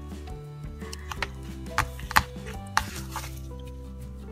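Soft background music with held notes, over which come a few short, sharp taps and clicks from hands pressing a felt backing onto a hot-glued ribbon corsage; the loudest tap is about two seconds in.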